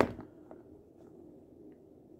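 Quiet room tone with a faint low hum and a couple of faint soft taps as leather knife sheaths are handled.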